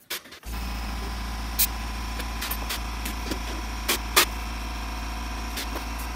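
Air compressor motor kicks on abruptly about half a second in and runs with a steady, even low hum. A few sharp clicks or knocks sound over it.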